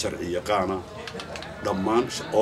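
A man speaking Somali into interview microphones, in two phrases with a short pause between them.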